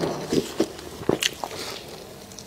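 Close-miked biting and chewing of food: a bite at the start, then a few short, sharp crunches as it is chewed.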